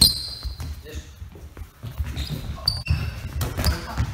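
Sneakers squeaking on a sports-hall floor, a sharp squeak at the start and several more later, over soft thumps of foam dodgeballs and footfalls, echoing in the hall.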